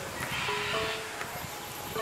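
A few sparse, held music notes over a steady outdoor noise. A brief, rougher, hissy burst in the upper range comes about a quarter second in and fades before the one-second mark.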